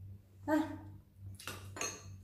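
A woman's short "ah", then about a second in two sharp clinks of a spoon against a ceramic bowl, the second ringing briefly. A steady low electrical hum runs underneath.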